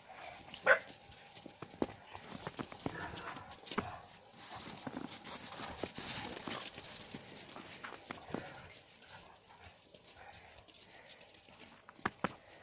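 Central Asian shepherd dogs and puppies running and romping in packed snow, making irregular paw thumps and scuffs. There is one short yelp about a second in.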